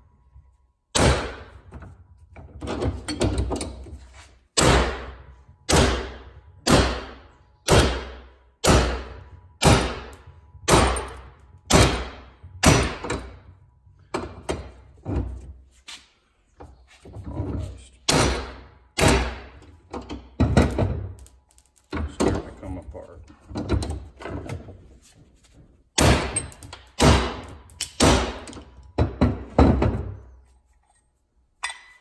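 Hammer blows on a steel socket used as a driver, knocking the old front axle bearing out of a Yamaha Grizzly 660 front knuckle clamped in a bench vise. Sharp metal-on-metal strikes come about once a second, each with a short ring, with a brief pause about halfway.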